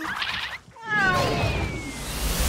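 Animated cat's yowl as he falls: after a short fluttery sound, a cry starts about a second in and slides down in pitch, with a thin high tone falling slowly beneath it.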